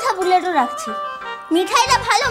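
A woman speaking over a background music score of sustained tones, with low beats near the end.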